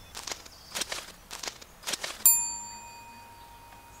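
About six light, irregular taps over the first two seconds. Then a single struck-bell ding a little past halfway, the loudest sound, ringing on and slowly fading.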